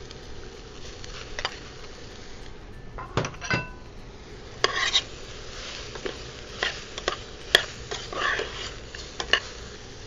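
Raw chicken pieces tipped into a stainless steel pot of barley and onions toasting in butter, then stirred with a spoon: irregular clinks and scrapes of the spoon and bowl against the pot, one clink ringing briefly a little over three seconds in, over a faint sizzle.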